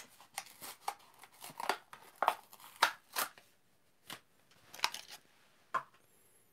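A Matchbox blister card, plastic bubble and cardboard backing, being torn open by hand: a run of irregular snaps, crackles and tearing sounds.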